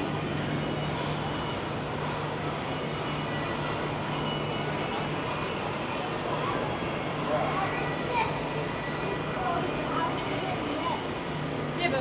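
Outdoor street ambience: a steady wash of traffic noise with a low hum, and passers-by talking faintly in the second half.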